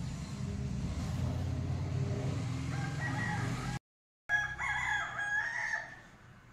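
A low steady rumble, joined near the end by a loud, long pitched animal call with several overtones. The sound cuts out for about half a second partway through the call.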